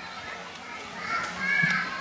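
Children's voices chattering in the background of a large hall, swelling a little about a second in, over a low steady hum.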